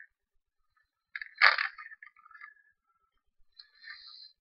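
Small handling noises of craft materials on a work surface, with one sharp tap about a second and a half in, followed by a few faint ticks.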